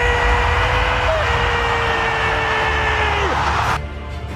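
A football commentator's drawn-out goal cry, one long held note lasting over three seconds that slides down at the end, over a cheering stadium crowd. The crowd noise cuts off abruptly near the end.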